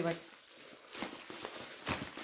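Rustling and handling of wrapped sweets and packaging from a gift parcel, with two short crinkling knocks, about a second in and near the end.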